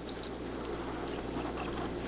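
Quiet steady room tone with a low electrical hum; no distinct handling sound stands out.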